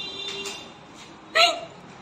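A woman laughing, with one short, sharp burst of laughter about one and a half seconds in.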